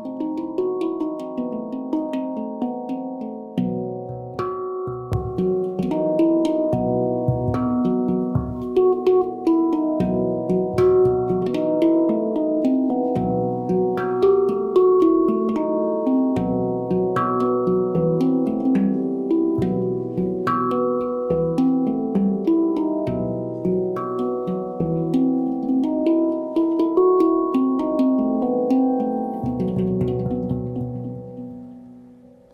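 Handpan played with the fingers: an improvised melody of struck, ringing steel notes that overlap and sustain, with a higher note coming back about every three seconds.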